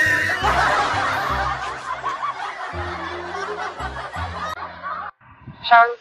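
Laughter over background music with a low, repeating bass line; the laughter fades away and both stop about five seconds in.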